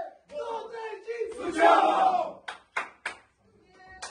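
A group of men chanting together in a huddle, rising into a loud shout about one and a half seconds in. Three sharp hand claps follow about a third of a second apart.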